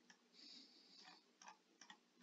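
Near silence broken by a few faint, short clicks spread through the two seconds, with a brief soft hiss in the first second.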